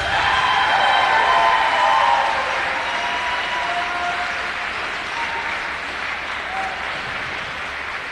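Audience applauding just after the skating music stops, loudest in the first two seconds and slowly fading.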